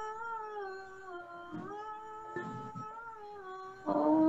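A woman's voice chanting one long held vowel note during a yoga breathing exercise. The pitch sinks slightly through the note, and a new, lower note begins right at the end.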